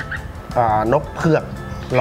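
A man speaking Thai over steady background music.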